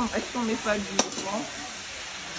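Onions, garlic and ginger sizzling as they fry in a pot, a steady hiss, with a single sharp click about a second in.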